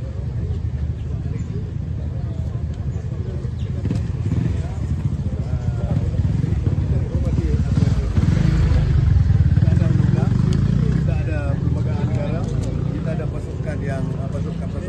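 Voices of a crowd of people talking in the open, over a low rumble that grows louder about eight seconds in and eases off after about eleven seconds.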